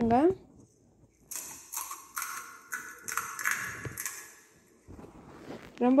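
Crisp fried pani puri shell crackling and crunching as a thumb breaks a hole in its top: a run of small, quick cracks lasting about three seconds.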